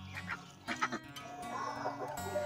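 A few faint calls from domestic ducks, over quiet acoustic background music.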